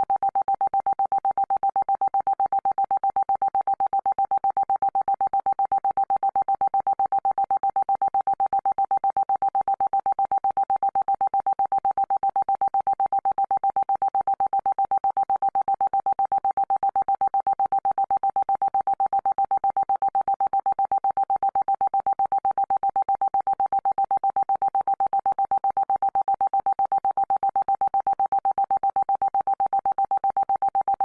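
A single steady synthesized tone, the kind played as a 'frequency healing' tone, held at one pitch with a fast, even pulse in its loudness.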